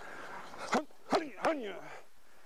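Three punches smacking into leather focus mitts about a second in, in quick succession, each with a short voiced grunt falling in pitch.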